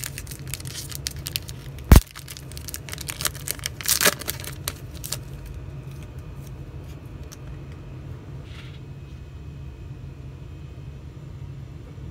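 Foil trading-card pack wrapper being torn open and crinkled, with one sharp loud click about two seconds in. After about five seconds it settles to faint handling of the cards over a steady low hum.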